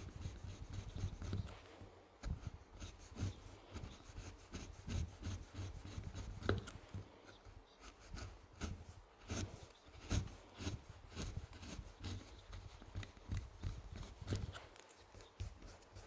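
A leather round knife skiving the end of a leather strap down to half thickness: many short, irregular scraping strokes of the blade across the leather on a stone slab.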